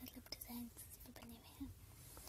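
A soft, faint voice in several short, broken fragments, close to a whisper.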